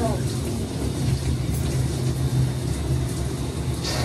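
A steady low rumble with a faint hiss, from a shower running behind the curtain.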